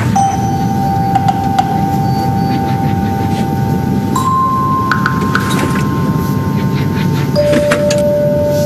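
A dense, steady low rumble under several long held chime-like tones, with new tones entering about four and seven seconds in, and a few faint clicks.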